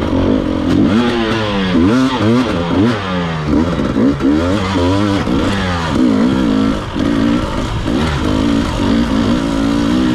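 Dirt bike engine revving up and dropping back over and over as the rider works the throttle through tight turns. It settles into steadier running near the end.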